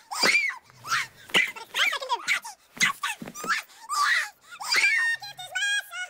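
Sped-up film soundtrack of a woman crying out and moaning in quick, high-pitched vocal bursts, her voice raised in pitch by the faster playback. Near the end come a few short, held tones.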